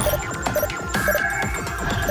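Electronic background music with a throbbing pulse, overlaid with short repeated beeps about twice a second.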